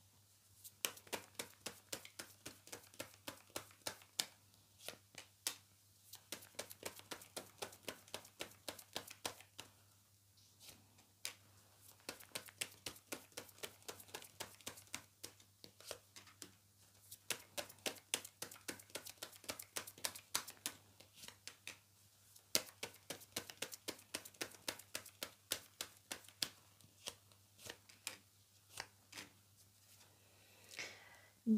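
A tarot deck being shuffled by hand and cards laid down on a table: quick runs of light card clicks, several a second, broken by brief pauses.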